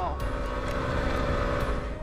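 Yamaha WR250R's single-cylinder four-stroke engine running at a steady, even note while the dual-sport bike is ridden along a dirt road, with a low rumble underneath.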